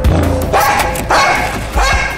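A dog barking about three times, short separate barks, over background music with a steady bass line.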